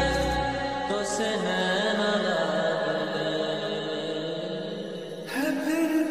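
Slowed-and-reverb lofi mix of Hindi love songs: drawn-out, reverberant held tones with a chant-like vocal line. The bass and beat drop out about half a second in, and a fuller section comes back in near the end.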